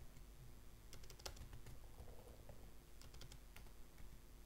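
Faint clicking of a computer keyboard: a few quick keystrokes about a second in and again after three seconds, over quiet room tone.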